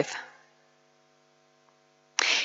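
Near silence with a faint, steady electrical hum made of several tones, after the last word of a spoken sentence dies away in the room's echo.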